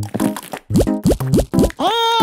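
Cartoon sound effects for a toothpaste tube being squeezed hard: a run of about five short squeaky swoops that rise quickly in pitch, over background music.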